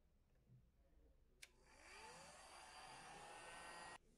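Handheld heat gun switched on with a click about a second and a half in, its fan whine rising as it spins up, then blowing steadily until it cuts off suddenly at the end.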